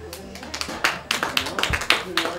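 Light, scattered clapping from a small audience: a string of separate, irregular claps, with faint voices underneath.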